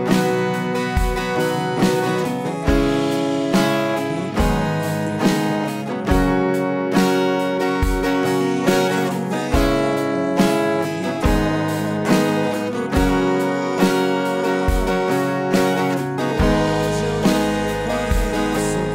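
Acoustic guitar, capoed at the fourth fret, strumming a steady repeating rhythm pattern through chords in B major (G#m, B, C#m, F#). A deep bass note marks the start of each bar.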